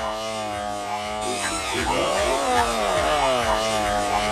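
A buzzy, pitched tone that keeps gliding up and down in pitch over a steady low drone.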